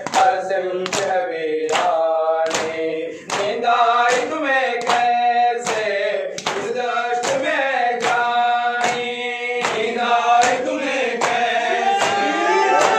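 Group of men chanting a nauha (mourning lament) in unison while beating their chests in matam. The hand strikes on the chest land in a steady beat, about one and a half a second, under the chanting.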